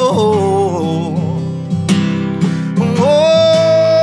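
A man singing a sliding, wavering vocal line that rises about three seconds in into a long held note, over a strummed steel-string acoustic guitar.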